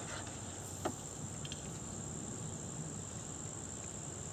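Two faint clicks, one at the start and one about a second in, from alligator clips and multimeter test leads being handled. Behind them runs a steady high-pitched hum.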